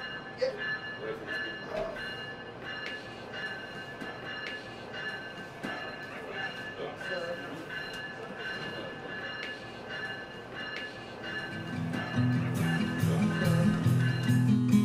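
Passenger train ambience: a steady high whine over the rumble of the running train, with faint clicks and muffled voices. Low music fades in about three-quarters of the way through.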